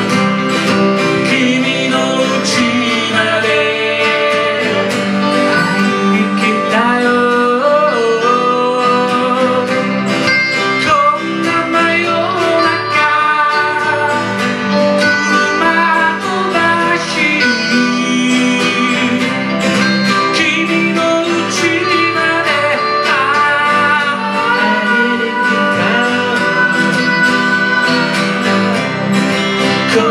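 Live country-flavoured song played on two acoustic guitars and an electric guitar, with singing, at a steady, full volume.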